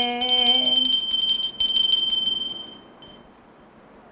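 Small silver handbell shaken rapidly, its clapper striking many times a second with a bright high ring; the ringing dies away about three seconds in. A woman's drawn-out voice sounds over it during the first second.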